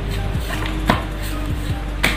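A deck of tarot cards being shuffled by hand: a few irregular clicks as the cards are pushed through the deck, the sharpest about a second in.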